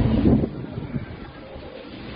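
Low rumble of handling noise on a phone's microphone as the camera is swung around, loudest in the first half second, then dropping to a faint steady hiss.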